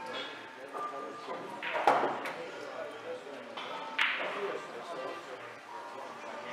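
Two sharp clicks of pool balls striking each other, the louder about two seconds in and another about two seconds later, over background voices.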